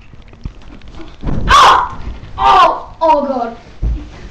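A young girl's voice shrieking and squealing in short outbursts without words, loudest about a second and a half in, followed by a low thud near the end.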